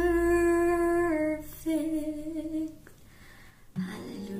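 A woman's unaccompanied voice holding long sung notes. A held note steps down in pitch about a second in, a second held note follows, then the voice stops. Near the end an acoustic guitar comes in.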